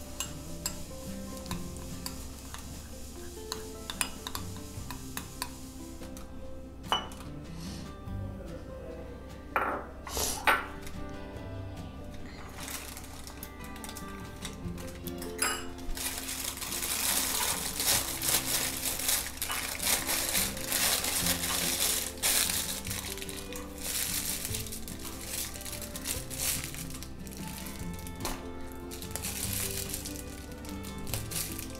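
Background music over light clinks and scrapes of a metal spoon against a glass bowl as melted chocolate is spooned into a plastic piping bag. A sharp pair of clinks comes about ten seconds in, and a stretch of plastic crinkling follows in the second half as the bag is handled.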